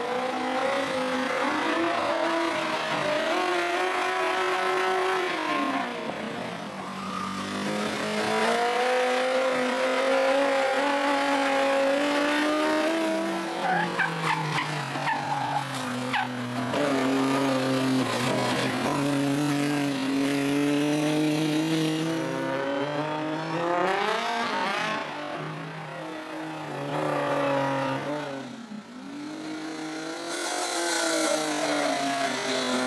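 Racing car engines in a slalom, revving hard and easing off again and again as they accelerate and brake between the cones, the pitch climbing and falling repeatedly. First a sports prototype is heard, then a single-seat formula car.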